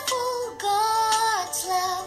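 A young boy singing a slow prayer in long held notes, sliding gently from one note to the next.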